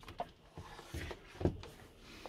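A few faint knocks and clicks as a motorhome cab seat is unlocked and swivelled round.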